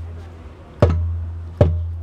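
Live acoustic band between sung lines: a hand drum struck twice, about a second in and again near the end, each hit sharp with a deep boom that fades, over a quiet acoustic guitar.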